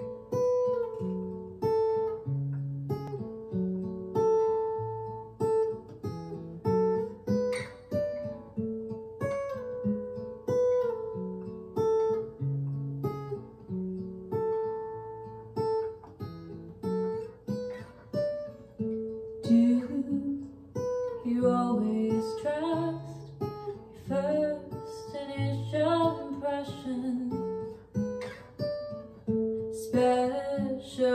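Acoustic guitar playing a slow picked pattern of single notes. About two-thirds of the way through, a woman's singing voice comes in over the guitar.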